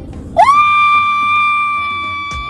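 A woman's voice sliding up into a very high sung note about half a second in and holding it steady and loud for over two seconds, an exaggerated cry of delight at a perfume's scent.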